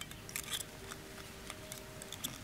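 Light, sharp clicks and ticks of thin steel wire and plastic tubing being handled between the fingers, the loudest cluster about half a second in.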